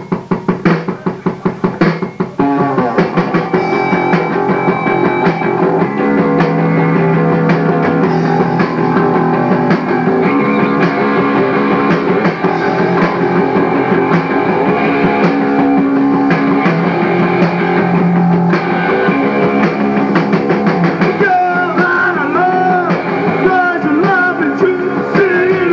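A live punk rock band starting a song: a couple of seconds of rapid, regular drum hits, then the full band with electric guitars, bass and drums. Singing comes in near the end.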